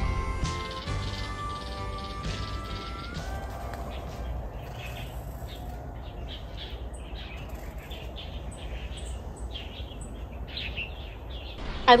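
Background music fades out over the first three seconds. Birds then chirp in short, scattered calls over steady low outdoor background noise.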